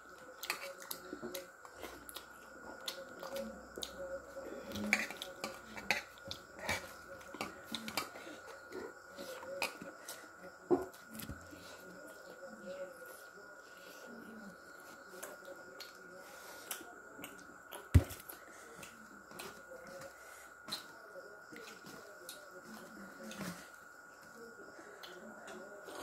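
Close-up eating by hand: chewing with mouth smacks and clicks, and scattered light clicks of fingers and food against steel plates, with one sharper knock about three quarters through. A faint steady high tone runs underneath.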